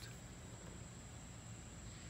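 Faint outdoor background: a quiet steady hiss with a thin, steady high-pitched tone running through it.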